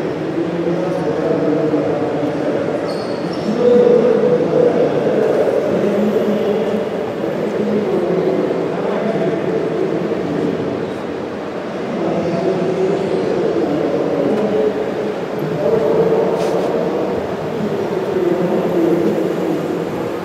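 Indistinct chatter of many people talking at once in a large hall, a steady babble with no single voice standing out.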